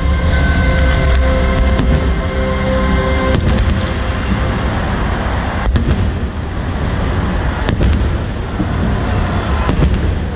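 Stadium fireworks crackling, with a sharp bang about every two seconds, over loud music whose held notes drop away about three seconds in.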